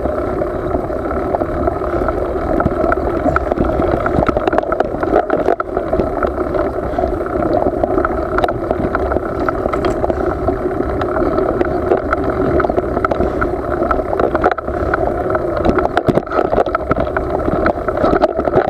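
Mountain bike rolling fast down a rough dirt track: steady wind rush and tyre rumble on the handlebar-mounted camera, with frequent rattling clicks as the bike goes over bumps.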